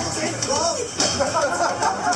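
Voices talking, with music in the background.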